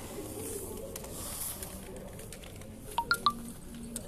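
Quiet office room tone with faint, indistinct background voices; a little after three seconds in, three quick sharp clicks in a row.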